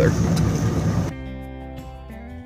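Boat motor running steadily under wind noise for about a second, then a cut to soft background music with sustained tones.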